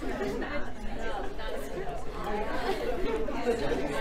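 Indistinct chatter of several people talking at once in a large room, no one voice standing out.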